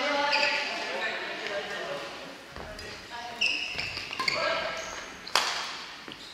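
Busy sports hall during badminton play: voices carrying in the echoing room, short high squeaks of shoes on the wooden court floor, and a sharp racket-on-shuttlecock hit about five seconds in.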